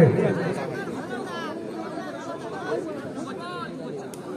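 Spectators' chatter from the crowd around the ground: many overlapping voices, with a raised voice calling out about a second in and again past three seconds.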